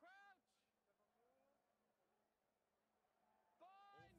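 Two short, drawn-out shouted calls from a voice, one at the start and one near the end, each rising and then falling in pitch, with faint background noise between them.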